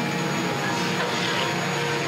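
Machinery of a large Jean Tinguely kinetic sculpture running: a steady, dense mechanical din with a few faint held tones.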